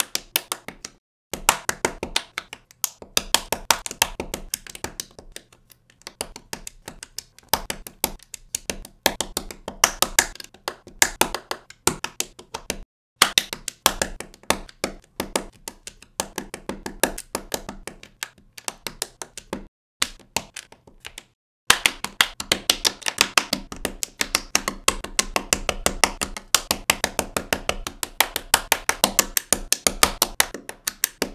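Rapid, irregular clicking and tapping of plastic LEGO bricks and tiles being pressed onto plates, several clicks a second. The clicking stops briefly three times.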